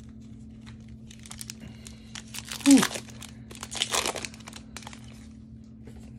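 Magic: The Gathering trading cards being handled and flipped through by hand, an irregular papery rustling and crinkling in several bursts over a steady low hum. A man's short "Ooh" comes midway.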